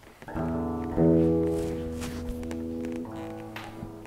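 Clean electric guitar chords, a PRS Custom 24 played through a Boss WL20 wireless system. A chord is struck about a third of a second in and again about a second in, rings on, and changes shortly before the end.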